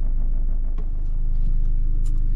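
A van's engine running steadily, heard from inside the cab as a low, even hum. About a second in, the hum shifts and grows slightly louder.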